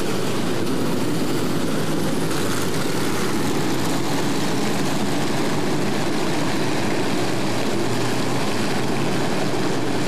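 A field of open-wheel dirt modified race cars' V8 engines running together in a steady, continuous drone as the pack circles the track.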